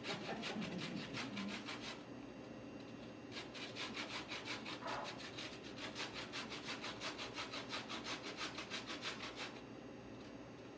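Lemon peel being zested on a small handheld metal grater: quick, even rasping strokes, about four or five a second. The strokes pause for about a second a couple of seconds in, then carry on until shortly before the end.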